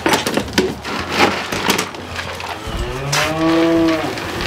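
A bull moos once near the end: a single drawn-out low call lasting just over a second, its pitch rising and then falling. Before it come several sharp wooden knocks and clatters from the pen boards.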